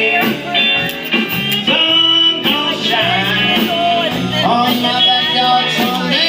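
A live band playing a song, with a lead vocal over electric guitars and drums, heard through the room.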